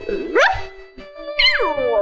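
Cartoon soundtrack: music with a sliding tone that rises about half a second in and another that falls steeply from high to low about a second and a half in.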